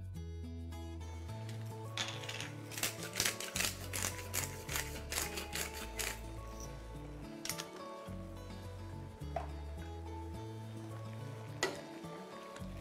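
Background music with a steady, stepping bass line. From about two to five seconds in comes a run of quick, dry clicks from a hand spice mill being twisted over the pot.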